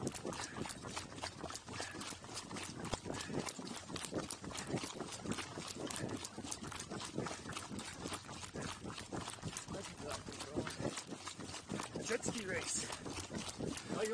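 Pack burro walking on a road, heard from its pack: a steady clip-clop of hooves, about four knocks a second, mixed with the knocking of the pack and its load with each step.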